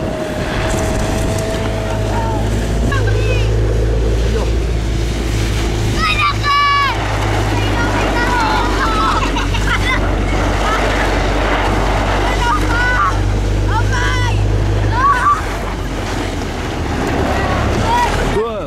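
Engine of the vehicle towing the mat running with a steady low hum, wind rushing over the microphone, and children shouting and shrieking several times while they are dragged along; the engine eases off about fifteen seconds in.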